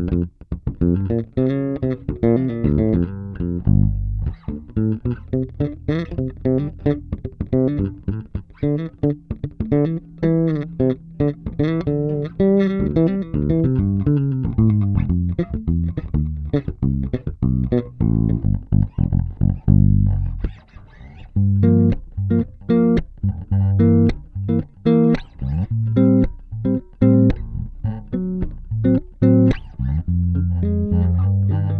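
Kiesel LB76 electric bass played through an Aguilar AG 700 bass head with its Bright switch on, boosting the treble, and recorded direct from the head's DI output. It plays an improvised run of quick plucked notes, which eases off for a couple of seconds about two-thirds of the way through and then comes back with heavier low notes.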